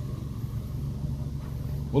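Toyota Vios four-cylinder petrol engine idling steadily, heard as a low hum inside the car's cabin.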